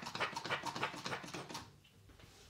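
A man laughing in quick, breathy pulses that stop near the end.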